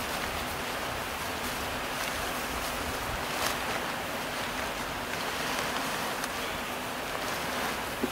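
Steady rushing outdoor noise, with faint rustling and a few soft ticks as a sleeping bag is pulled out of its nylon stuff sack.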